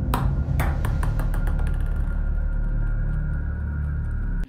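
A ball bouncing on a floor with a ringing clank at each bounce. The bounces come quicker and fainter until it comes to rest about two seconds in, over a loud low droning rumble.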